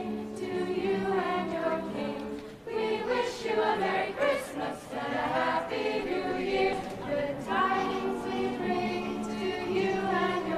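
A choir singing held notes, with a brief dip in level about two and a half seconds in.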